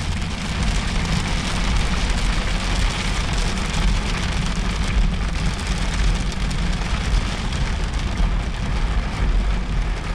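Heavy rain beating steadily on the roof and windscreen of a Toyota Land Cruiser 76 series, heard loud from inside the cab, over the low steady rumble of the moving vehicle.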